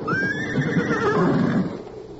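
Horse whinnying once, a radio-drama sound effect: the call rises quickly, wavers, then falls away over about a second and a half.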